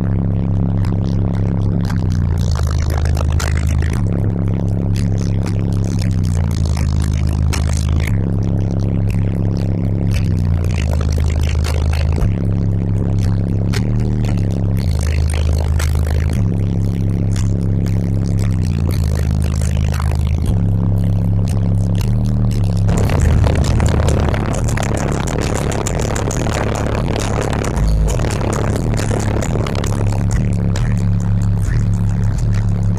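Loud bass-heavy music played through a car audio system's two Sundown ZV4 12-inch subwoofers in a low-tuned ported box, heard from inside the cabin. A deep bass line of held notes shifts pitch every second or two.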